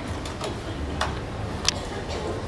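Four sharp clicks, irregularly spaced, the last near the end the loudest, over a low steady rumble.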